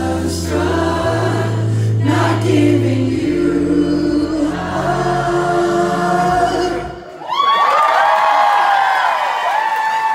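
Live pop music with singing over a steady bass ends abruptly about seven seconds in. The audience then cheers, with many high shouts and screams.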